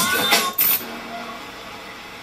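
A woman's voice briefly at the start, ending in a short hiss, then a quiet stretch with only faint steady background sound.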